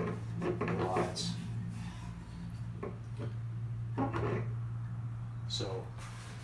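A long Stanley spirit level being shifted and set down on old wooden floorboards: several separate knocks and scrapes of the level against the wood, over a steady low hum.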